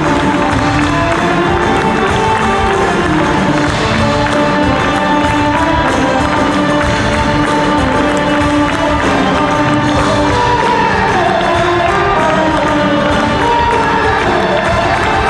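A live rock band playing loudly, with guitars and keyboards over a steady beat, heard from among the audience with crowd noise beneath.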